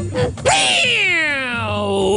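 A long meow-like cry that starts about half a second in and slides steadily down in pitch for about a second and a half, right after a burst of guitar music.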